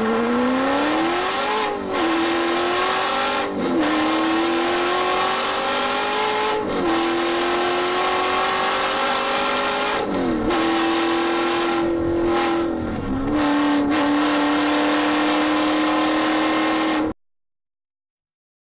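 Stroked, supercharged C5 Corvette V8 accelerating hard through the gears, its note climbing in pitch and dipping briefly at each upshift, about five shifts in all. The later gears hold a steadier note, and the sound cuts off suddenly near the end.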